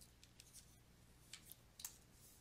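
Near silence with a low steady room hum, broken by a few faint short clicks about a second and a half in and again near the end.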